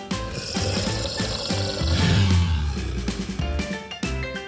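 Background music with a noisy sound effect mixed over it, swelling about two seconds in.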